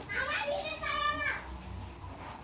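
A child's voice calling out twice, high-pitched, each call about half a second long.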